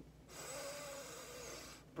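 A person's long, audible breath in, lasting about a second and a half, drawn in response to a spoken "breathe in" cue.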